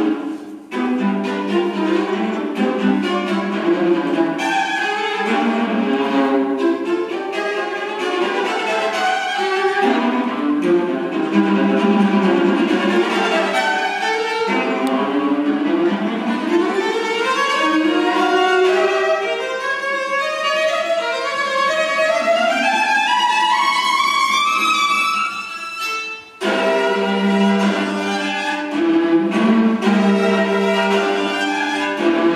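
Solo violin playing with a string orchestra, bowed strings accompanying. In the middle come fast rising runs, with two brief breaks in the sound, one about half a second in and one a few seconds before the end.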